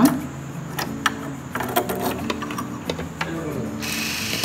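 Singer sewing machine clicking irregularly as a button is stitched on.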